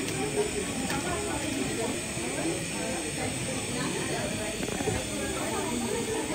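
Steady hiss of a glassworker's gas bench torch, with people talking in the background.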